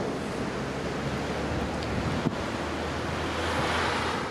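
Wind rushing over the microphone of a camera carried on a moving bicycle, a steady noise with a low rumble that swells slightly near the end.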